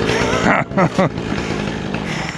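A chainsaw engine running steadily in the background, with a person laughing briefly about half a second in.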